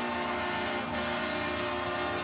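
Hockey arena goal horn sounding a steady, held tone over crowd noise, signalling a home-team goal.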